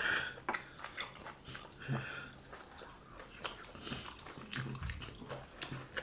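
People chewing fufu and egusi soup, with many short wet smacks and clicks of mouth and fingers, and a couple of brief murmured sounds.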